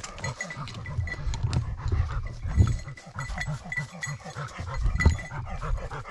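A hunting dog panting hard close by, in quick, uneven breaths.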